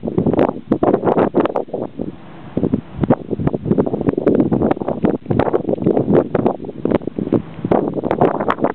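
Gusty wind buffeting a camera microphone: loud, irregular rumbling gusts that ease briefly about two seconds in.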